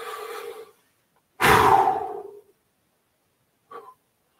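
A man takes a deep audible breath in through the mouth. About a second and a half in, he blows it out in one sharp, forceful exhale, the loudest sound here, which trails off over about a second.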